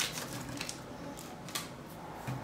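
A metal mesh sieve full of flour and baking powder being shaken and tapped over a glass bowl, giving a few light, irregular taps and a soft rustle as the flour sifts through.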